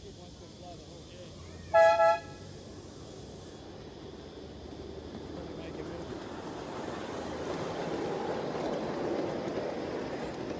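Miniature ride-on train sounding two short horn toots about two seconds in, then the rumble of its wheels on the track building as it draws near and passes, loudest near the end.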